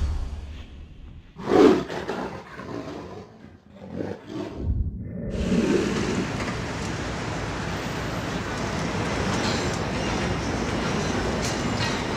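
A big-cat roar sound effect about one and a half seconds in, dying away unevenly over the next few seconds. From about five seconds on, steady city street noise with passing traffic.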